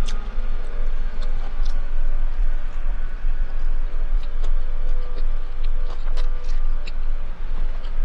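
A person chewing a mouthful of a fried chicken sandwich, with scattered small wet mouth clicks, over a steady low rumble inside a car.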